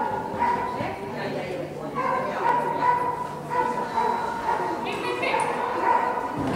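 Excited dog yipping and whining in a high pitch, over and over, as it sets off on an agility run.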